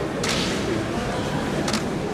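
Straw broom sweeping the sand-covered clay surface of a sumo ring: two brisk swishing strokes about a second and a half apart, over the murmur of a large hall.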